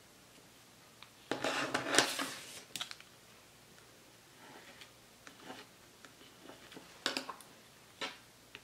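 Stamping polish scraped across a metal nail-stamping plate, a rasp about a second long, followed by light clicks and taps of handling. Near the end comes a short sharp rub as the clear jelly stamper is pressed onto the plate to pick up the image.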